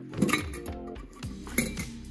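Background music with a steady beat, with sharp clinks about a quarter second in and again about one and a half seconds in.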